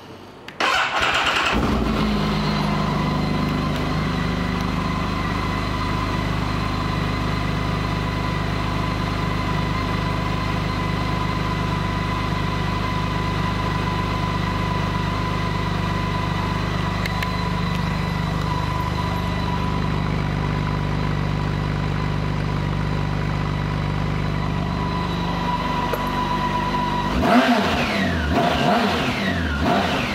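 BMW K1600 GTL's inline-six engine starting after a brief crank about a second in, then idling steadily with a thin high whine over it. Near the end the throttle is blipped several times, the revs rising and falling.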